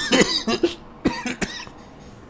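A man coughs briefly, followed by two light clicks about a second in.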